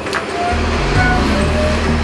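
Street traffic: a city bus's engine running close by and cars passing, a steady low hum under a wash of road noise.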